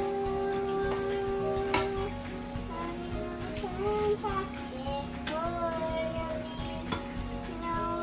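Kitchen tap running into a stainless steel sink as a plate is rinsed under the stream, with a few sharp clinks of crockery, the loudest about two seconds in. A tune of held, sliding notes plays over it.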